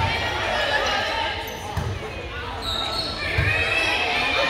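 Spectators' voices echoing in a school gymnasium during a volleyball rally, with three dull thumps spaced under two seconds apart and a short high tone a little before the end.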